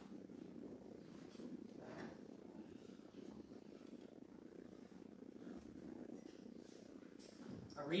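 Quiet church room tone: a faint low steady hum with soft footsteps and shuffling as the reader walks to the lectern, including a soft knock about two seconds in. A voice begins reading right at the very end.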